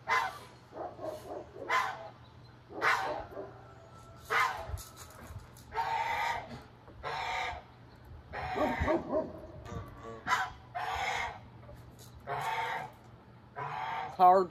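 Chickens and geese calling, a string of separate short honks and clucks about one a second.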